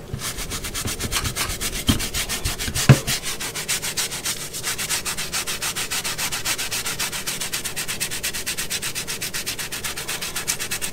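A toothbrush scrubbing the fabric of a car armrest in fast, even strokes, about six a second. There are two knocks about two and three seconds in.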